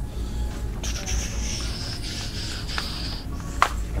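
Faint background music in a shop, over a low rumble of the handheld camera being carried, with a sharp click near the end.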